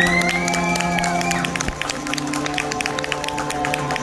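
Violin street-performance music over a backing track: sustained chords, with a high note sliding up and holding about a second and a half near the start. An audience claps throughout.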